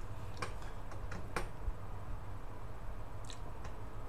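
A few light clicks from a computer mouse, scattered through the pause, with the sharpest about a second and a half in and a fainter group near the end, over a low steady room hum.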